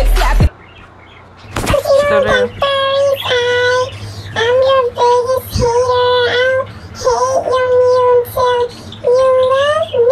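A rap track cuts off abruptly about half a second in; after a brief lull, a song with a high, childlike singing voice starts, holding long steady notes between short phrases.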